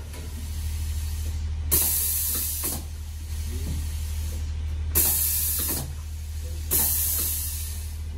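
Pneumatic hopper-fed filling machine cycling: three sharp hisses of compressed air venting from its cylinders, each about a second long, with the second and third close together, over a steady low hum.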